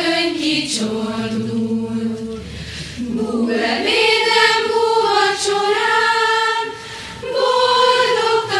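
A choir singing a slow song in unison, with long held notes in phrases and short breaks between them.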